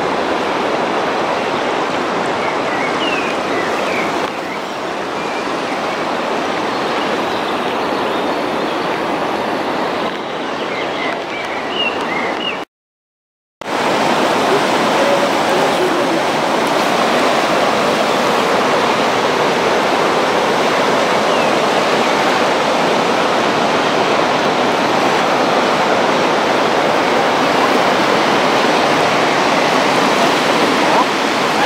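Floodwater rushing over a weir and around a stone bridge pier, a loud, steady rush of water. It breaks off for about a second near the middle, where the recording is cut.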